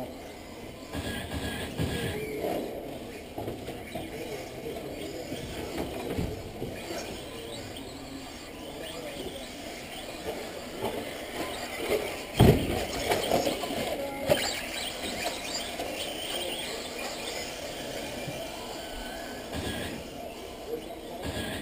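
Radio-controlled off-road race cars running on an indoor clay track: high-pitched motor whine and tyre noise echoing around a large hall, with one sharp loud knock about twelve seconds in.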